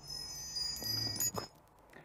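A chime sound effect for an animated transition: several high ringing tones sound together for about a second and a half, then stop.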